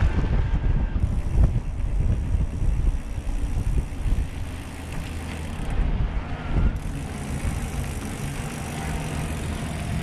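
Wind noise on the microphone over the sound of mountain-bike tyres rolling on a sandy dirt trail while riding along.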